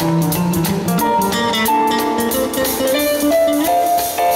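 Live band playing an instrumental passage of a Christmas song: a melodic lead line over keyboard, bass and a drum kit keeping time on the cymbals.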